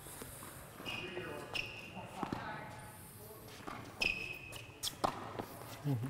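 Tennis balls struck by rackets and bouncing on an indoor hard court during a volley drill: a few sharp pops about a second apart, echoing in the large hall.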